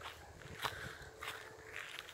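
Quiet footsteps of a person walking on dry ground and gravel beside railway tracks, a step a little more than every half second.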